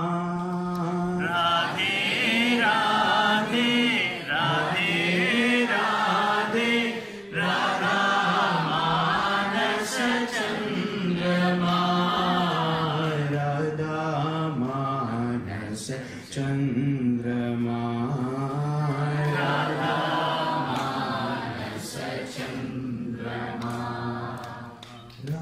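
A male priest chanting Hindu mantras into a microphone: a slow, melodic recitation on long held notes that step up and down, with short breaks for breath about 4, 7 and 16 seconds in.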